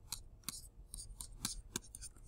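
Pen stylus tapping and scratching on a tablet screen while handwriting: a string of faint, short, irregular clicks.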